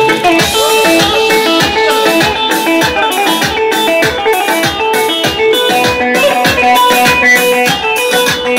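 Electronic keyboard playing a lively halay dance tune, a plucked-string melody over a steady drum beat.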